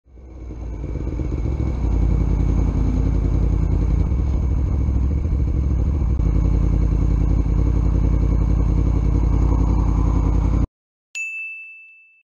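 Steady low rumble of an idling motorcycle and passing traffic that fades in over the first two seconds and cuts off abruptly near the end. A single bright ding sound effect follows and rings out.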